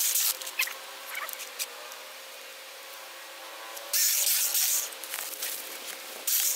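Jeopace 6-inch cordless mini pruning chainsaw running with a steady thin whine from its electric motor and chain. About four seconds in, the chain bites into wood in a loud rasping burst that lasts just over a second.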